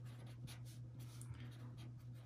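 Felt-tip marker writing on paper, a run of faint, irregular strokes over a steady low hum.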